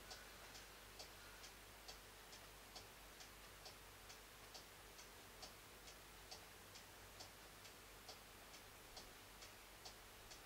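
Near silence with the faint, steady ticking of a clock, about two ticks a second.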